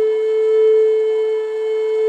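Flute music: a single long note held steadily, with a slight dip in loudness near the end.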